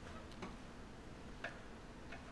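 Two faint clicks about a second apart over quiet room noise.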